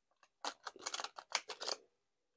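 A deck of tarot cards being riffle-shuffled by hand, the card edges flicking together in a quick, dense run of clicks lasting about a second and a half.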